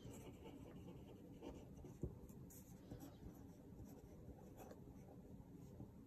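Faint pen writing on paper: soft scratching strokes, with a light tick about two seconds in.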